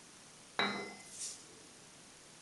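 A metal part, the shop-made aluminium expanding mandrel, set down on a sheet-metal bench top: one sharp clink with a brief metallic ring, followed by a softer brushing sound.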